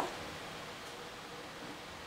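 Quiet room tone: a steady, faint hiss with no distinct sound events.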